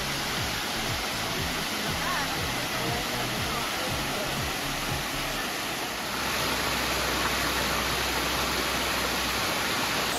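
Katoomba Falls cascading over stepped sandstone ledges: a steady rush of falling water that grows slightly louder and deeper about six seconds in.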